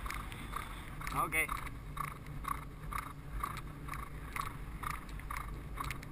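A racehorse's hoofbeats on the dirt track in an even rhythm of about two a second, heard close up from the rider's helmet over a low wind rumble.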